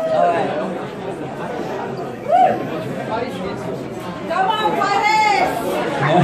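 Audience chatter in a hall: several people talking over one another, with louder voices about two seconds in and again near the end.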